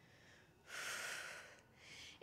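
A woman's single audible exhale, about a second long, starting a little over half a second in and fading away, as she curls her knee in to her elbow in a yoga crunch.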